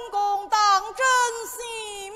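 Peking opera laosheng (bearded male lead) voice delivering a line in high, gliding, sung tones, broken into short phrases.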